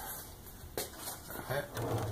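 Faint handling sounds of a polystyrene foam block being lined up against a magnetic backstop on a steel saw table, with one light knock a little under a second in.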